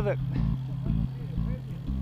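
Steady low rumble of wind and tyre noise from a road bike rolling along a paved path, picked up by a camera mounted on the bike.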